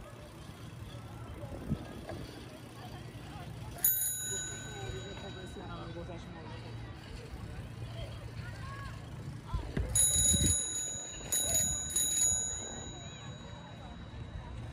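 A small metal bell rung once about four seconds in, its clear ring fading slowly, then rung several more times in quick succession near the ten-to-twelve-second mark, over a steady background hum and faint voices.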